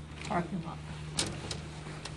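Hotel room curtains drawn open along their rod, with two sharp clicks about a second in, over a steady low hum.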